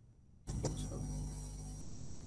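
Steady low electrical hum and hiss of background noise on the microphone line, cutting in suddenly about half a second in after near silence, with a couple of faint clicks.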